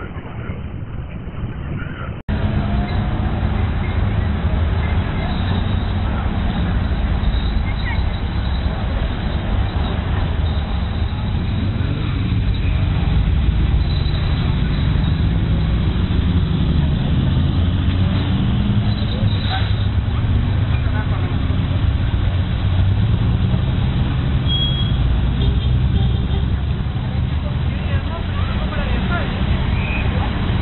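Engines of classic sports cars running at low speed as they roll past one after another, a steady low engine sound with people talking underneath. The sound jumps louder at an abrupt cut about two seconds in.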